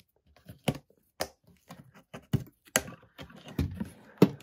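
Metal clasp and lid of a decorative storage trunk being unlatched and opened: a series of irregular clicks and knocks.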